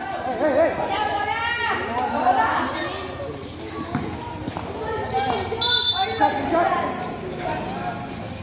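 Spectators' voices and shouts over a basketball being dribbled on a concrete court, with a few sharp bounces.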